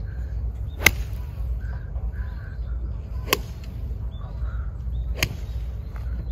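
Golf iron striking practice balls: three sharp clicks about two seconds apart, the first the loudest. Crows caw faintly in the background.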